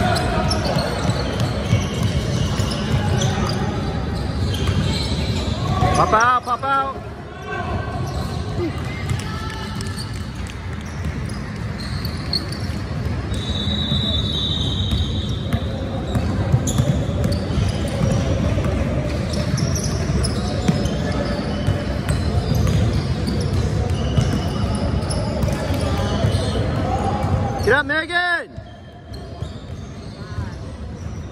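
A basketball being dribbled on a hardwood gym court, with voices of players and spectators echoing in the large hall. A short loud call with a bending pitch comes about six seconds in and again near the end.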